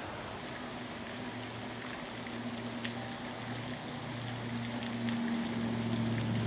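A steady low motor hum that gets louder in the second half, over a hiss of running water.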